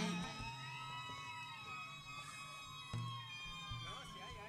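The band's music stops at the start, leaving faint, distant sapucay cries from the crowd: long wailing shouts that rise and then fall in pitch. There is a single knock about three seconds in.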